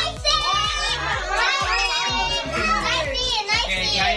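Children shouting and laughing excitedly over music with a steady beat.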